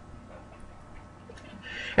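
A pause between sentences: faint room noise and a low hum, with a short intake of breath near the end before speech resumes.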